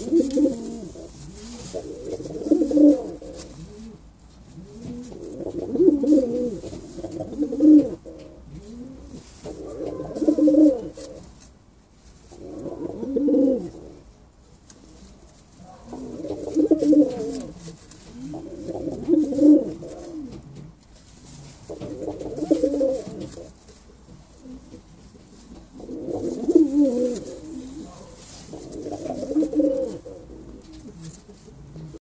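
Domestic pigeon cock (Spanish palomo) cooing in repeated bouts, each a low rolling coo lasting about a second, one bout every two to three seconds.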